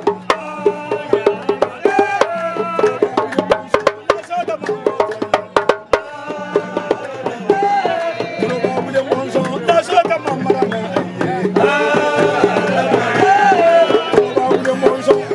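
Small hand-held drums, among them an underarm talking drum struck with a curved stick, playing a fast rhythm of sharp strokes. Voices sing over the drums, louder in the second half.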